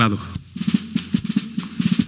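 A spoken word at the start, then fast, evenly repeating percussive strokes of the stage accompaniment, like a drum roll, under the recitation.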